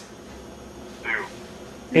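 One short, high-pitched vocal sound about a second in, rising and falling in pitch, over quiet room tone.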